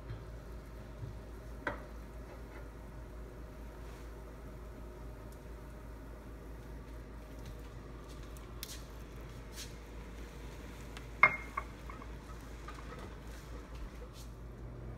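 Spatula stirring and scraping in a saucepan of sugar syrup on the stove, with gelatin scraped in from a small ramekin. A sharp knock comes about eleven seconds in.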